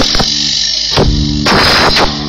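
Live experimental electronic folk music: drum hits over sustained low tones. A sharp hit opens it and a thinner patch follows, then a louder hit about a second in brings the low tones back, and a noisy, cymbal-like wash comes in the second half.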